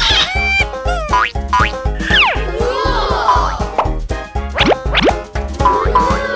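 Upbeat children's background music with a steady beat, over which several quick rising sliding sound effects play.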